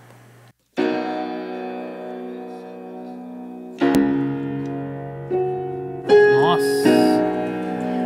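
Recorded acoustic piano track played back solo: sustained chords begin just under a second in, with new chords struck at about four, five, six and seven seconds.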